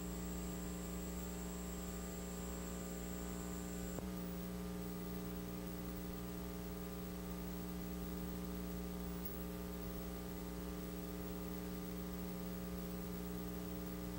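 Steady electrical mains hum with a stack of overtones, with no commentary or crowd over it. A faint high whine stops about four seconds in, where there is a small click, and there is another slight click a few seconds later.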